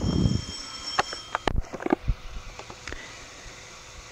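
Handling noise on an interview recording: a low rumble at the start, then a few scattered soft knocks and clicks over the next couple of seconds, with a faint steady high whine in the first second and a half.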